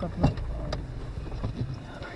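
A vehicle's engine running with a steady low rumble, with several sharp knocks and clunks over it, the loudest about a quarter second in.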